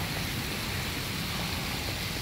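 Steady splashing hiss of water jets pouring from the wall spouts into a swimming pool.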